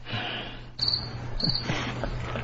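Cricket-chirping sound effect: a hiss of night ambience that comes in suddenly, then two short high chirps about half a second apart. It is the stock gag for a joke met with silence.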